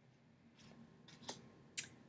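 Tarot cards being handled: a faint click about halfway through, then a brief swish near the end, over quiet room tone.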